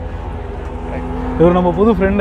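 An engine running steadily, a low rumble with a constant hum, under a few words from a man near the end.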